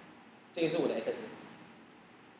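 A short spoken utterance about half a second in, then quiet room tone.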